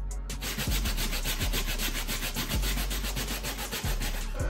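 Stiff nylon hand brush scrubbing a wet, soapy sneaker insole in circles: a rapid, even scratching rub that starts just after the beginning.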